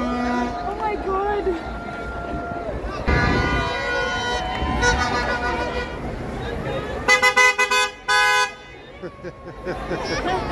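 Car horns honking in celebration: a longer horn about three seconds in, then a quick burst of about five short toots near the seven-second mark and one held blast just after, over street crowd voices.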